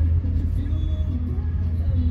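Electronic music playing through a car's aftermarket Android stereo, heard inside the cabin, with a heavy steady bass under a stepping melody.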